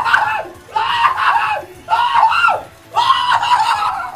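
A man screaming with excitement in celebration of a big slot-machine win: four long, high-pitched yells, one after another.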